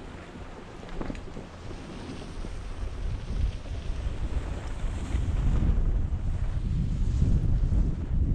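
Wind buffeting a moving body-worn camera's microphone as it travels down a ski slope, a low rumble that grows steadily louder as speed picks up.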